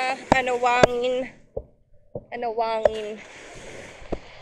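Drawn-out vocal exclamations ("Oh") broken by a few sharp clicks, then a steady wash of surf on the shore for about the last second.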